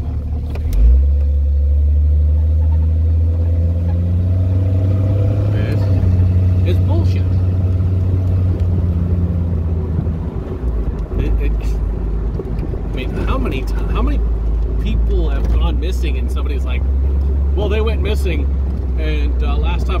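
Jeep engine and road noise heard from inside the cabin while driving: a heavy low drone with a jolt about a second in, the engine note rising steadily as it accelerates, then dropping to a lower drone about ten seconds in, like a gear change.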